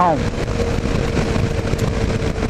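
Kawasaki KLR 650 single-cylinder motorcycle cruising at steady road speed, heard from a helmet camera: an even drone of engine, wind and road noise with a steady hum under it.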